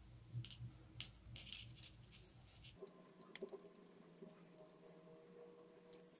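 Near silence with faint, scattered ticks of metal knitting needles working stitches, coming closer together about three seconds in.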